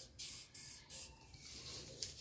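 Faint scratching of a line being drawn on pattern paper, in three or four short strokes, with fainter scratching after.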